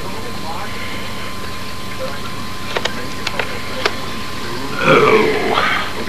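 Steady background hiss and hum with a few light clicks in the middle, and a low murmured voice near the end.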